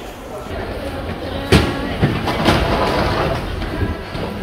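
Subway station concourse ambience: a steady low rumble of trains running, with background voices and two sharp knocks about a second and a half in and a second later.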